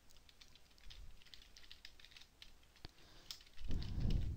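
Computer keyboard typing: a quick run of light keystrokes as a short word is entered, with a brief low rumble near the end.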